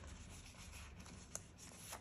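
Faint rustle and rubbing of polymer £5 banknotes being leafed through in the hands, with one small click a little past halfway.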